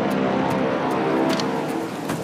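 Sound-designed engine drone for a flying formation, like a fixed-wing aircraft passing: a loud, steady, many-toned hum that eases slightly near the end.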